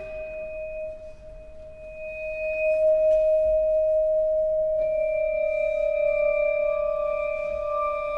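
Slow contemporary chamber music made of long-held, pure, bell-like tones. A single sustained note swells about two seconds in, and two higher held notes join it about five seconds in.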